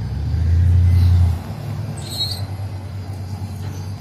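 Motor vehicle engine running with a deep hum that swells loud for about a second near the start, then eases back to a steady idle.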